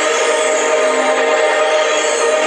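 A loud, sustained electronic chord: several steady tones held together with a hissing wash above them and no beat.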